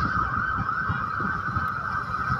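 Wind buffeting the microphone in an irregular low rumble, over a steady high-pitched drone.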